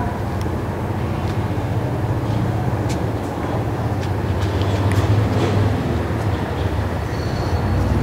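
Steady low rumbling background noise, even throughout, with a few faint clicks.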